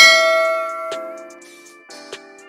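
Notification-bell sound effect from a subscribe animation: one bright bell ding that rings out and fades over about a second and a half, over soft background music.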